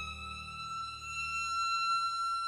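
Alarm siren at a wildfire brigade base, winding up: its pitch eases upward, then holds at a steady high wail that grows a little louder near the end. It is the call-out signal that sends the crew to a fire.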